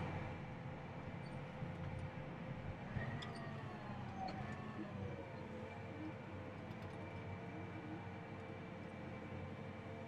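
John Deere tractor's diesel engine running steadily at about 1,100 rpm, heard faintly from inside the cab. About three seconds in, a faint whine slides down in pitch as the tractor slows and the e23 powershift transmission shifts down through its gears.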